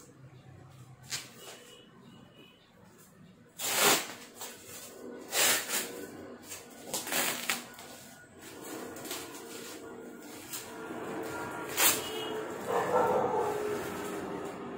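Plastic bubble wrap crinkling and packing tape being peeled and torn off a cardboard box, in several sharp crackling bursts with rustling between. Near the end a pitched, wavering cry rises in the background.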